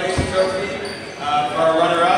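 A single low thud about a fifth of a second in, amid voices talking in a gym.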